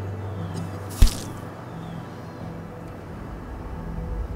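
Knife-stab sound effect: one sharp hit about a second in with a short tail, over low, steady background music.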